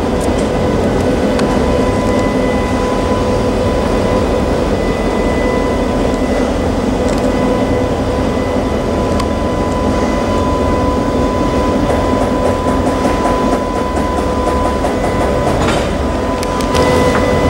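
EMD GP38-2 diesel locomotive's 16-cylinder 645 engine running during a switching move: a steady low rumble with constant tones over it. Light clicking comes in over the last few seconds.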